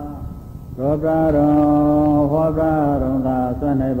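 A man chanting a Buddhist chant in Pali with long held notes that glide from one pitch to the next. The chant picks up again about a second in after a short pause.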